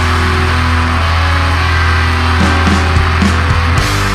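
Post-black metal played loud by a full band: a dense wall of sound with a steady low bass underneath.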